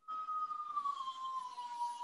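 A siren's single long wail, slowly falling in pitch.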